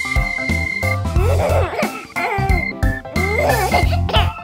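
Children's-song keyboard music. Twice, about a second in and again near the end, a cartoon character's wobbling, sliding vocal sound plays over it.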